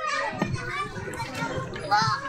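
Children at play: several young voices chattering and calling over one another.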